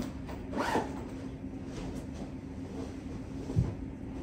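A zipper on a handbag pulled in one brief stroke near the start, then quieter handling of the bag and a soft thump near the end, over a steady low hum.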